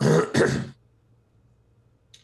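A man clearing his throat twice in quick succession.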